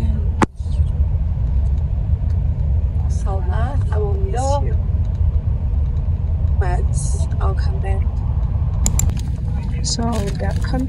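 Steady low rumble of a bus's engine and tyres heard from inside the cabin as it drives, with a sharp click about half a second in.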